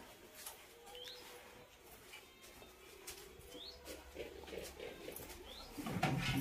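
A bird calling faintly, a short rising chirp heard three times a second or two apart, over faint scattered knocks.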